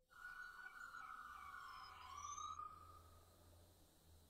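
Faint wailing siren, its pitch slowly falling, fading out about three seconds in.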